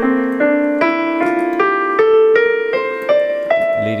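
Digital piano playing a rising F major scale, single notes stepping up about two or three a second over held lower notes.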